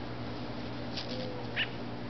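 Two brief animal calls over a steady low background hum: a quick high flutter about a second in, then a louder short call about half a second later.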